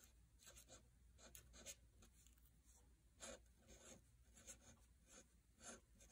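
Faint scratching of a fine-tip pen writing words on lined paper: a quick run of short, light strokes with small pauses between letters.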